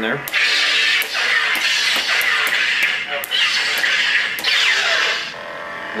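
Lightsaber sound board (Plecter Labs Crystal Focus v1.2) playing its custom swing sounds through the hilt's speaker as the blade is swung: a run of about five hissing swooshes, roughly one a second.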